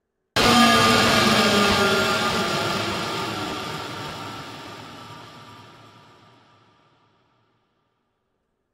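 Cinematic trailer downer: a drone sample that has been time-stretched, pitch-shifted, distorted and ring-modulated. It hits suddenly about a third of a second in, then slides down in pitch while fading out over about seven seconds.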